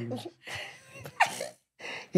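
A woman's breathy, gasping laughter: a few short airy bursts with a brief squeal about a second in.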